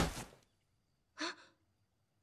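A heavy thud at the very start, fading within half a second, as a limp body tumbles out of a wardrobe onto the floor. About a second later comes a short, breathy gasp.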